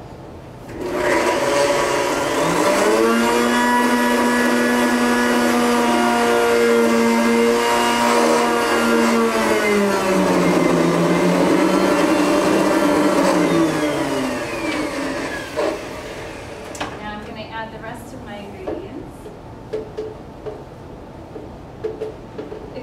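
Countertop blender puréeing roasted tomatoes, jalapeño and garlic into salsa. The motor spins up about a second in and runs at a steady pitch, drops to a lower speed about halfway, then winds down and stops a few seconds before the end.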